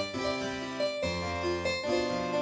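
Sampled harpsichord, the 'Harpsi' sound of the Studiologic Numa Player, playing a melody over low bass notes. The notes change about every half second, and a new low bass note comes in about a second in.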